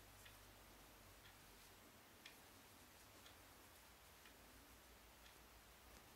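Near silence: quiet room tone with faint ticks about once a second.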